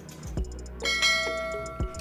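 A click followed by a bright, many-toned bell chime that rings for about a second and fades: the ding sound effect of an animated subscribe-and-bell button.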